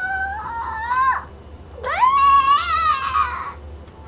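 A woman's high-pitched, drawn-out vocal noises while stretching: two long wavering groans that rise and bend in pitch.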